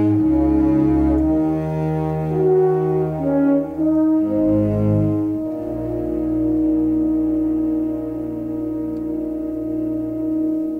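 Orchestral film-score music: brass holds one long note over low notes that shift about halfway through.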